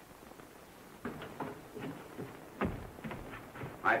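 Footsteps: a string of short, uneven knocks, about two or three a second, starting about a second in. One step a little past halfway is heavier than the rest.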